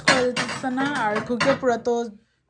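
Glass plates clinking against each other and the shelf as they are stacked into a wooden cabinet, with a voice running underneath.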